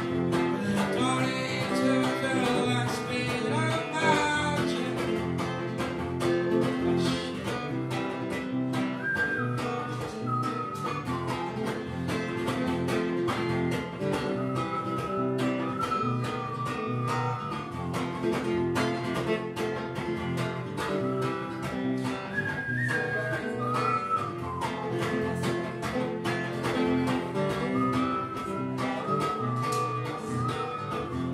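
Steel-string acoustic guitar played live, an instrumental passage of picked and strummed chords between sung verses, with a higher melody line that comes back every few seconds.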